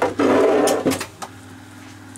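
A loud rubbing rustle lasting just under a second, the camera being handled and swung, followed by a steady low hum.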